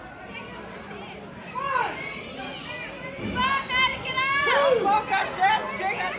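Children in the crowd yelling and cheering, several high voices overlapping and growing louder from about a second and a half in.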